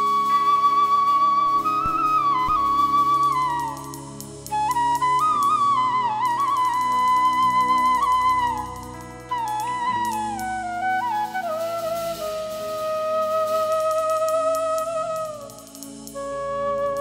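Bansuri (bamboo transverse flute) playing a slow, ornamented melody in three phrases, ending on a long held note with vibrato, over held chords underneath.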